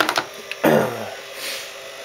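Handling noise: a few sharp clicks as a plastic clamp meter is handled on a wooden workbench, then a short hum from a voice falling in pitch and a brief rustle.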